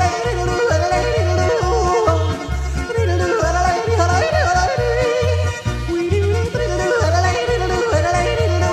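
Yodeling over upbeat Alpine folk-pop backing: a voice leaps back and forth between low and high notes over a steady bass beat about twice a second.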